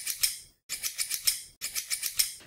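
Scissors snipping through a sheet of paper in a run of quick, short cuts, several a second, broken by a brief silent gap about half a second in.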